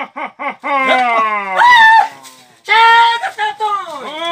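Several men's voices crying out and yelling without clear words: quick short cries, then long drawn-out wailing cries with two voices at once, in alarm at a supposed ghost.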